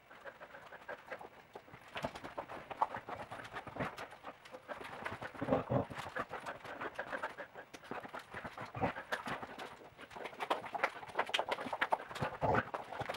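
Border collie scrambling and pouncing while playing with a flirt-pole toy: a fast, uneven run of paw and claw taps and scuffs on the floor, with a louder thump about halfway through.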